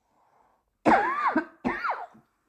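A person coughing twice about a second in, the first cough longer and louder than the second, in the middle of a recurring coughing fit.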